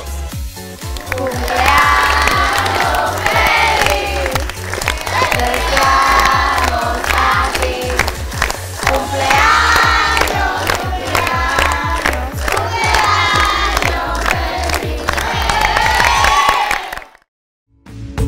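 A group of children singing together in short phrases and clapping along, over background music with a steady bass beat; it cuts off about a second before the end.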